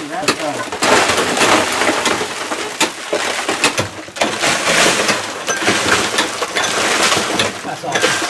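Steel tool working the rock face of a gold-mine tunnel, a continuous gritty clatter of chipping and scraping rock with scattered sharp knocks.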